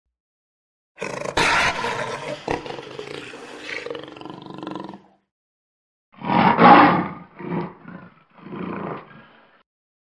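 Jaguar growling. A long, rough growl lasts about four seconds, and after a short pause comes a run of four grunting roars, the first the loudest. It is the sound of an angry jaguar.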